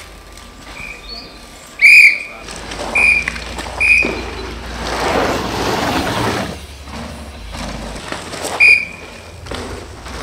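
A shrill whistle blown in short, sharp blasts, the loudest and longest about two seconds in, more at about three, four and eight and a half seconds. In between, a rushing noise swells and fades as a downhill mountain bike rolls past over the course's wooden ramp.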